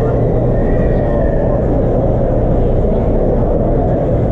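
Steady low rumble of the background noise in a crowded exhibition hall, with a faint steady hum.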